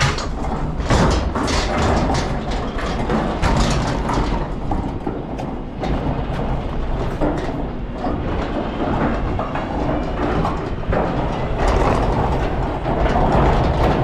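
Large plastic communal wheelie bin being wheeled over block paving, its castors and body rattling in a continuous clatter with frequent small knocks.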